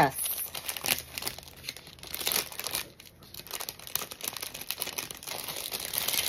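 A clear plastic package crinkling and crackling as it is handled and worked at to get it open, in a dense, irregular run of crackles with a short lull about halfway through.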